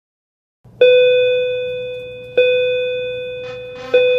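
A school bell chime sounding three times at the same pitch, about a second and a half apart, each ring fading away: the class-change signal.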